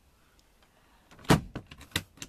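A single loud knock a little over a second in, followed by a few lighter clicks and another sharp tap near the end, against a quiet cabin background.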